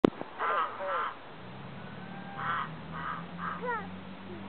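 A flock of white domestic geese honking: about six short, harsh calls, the first two in quick succession and the rest in the second half. A sharp click at the very start is the loudest sound.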